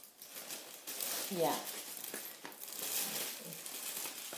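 Clear cellophane gift-basket wrap crinkling and rustling as it is gathered and handled, in irregular small crackles.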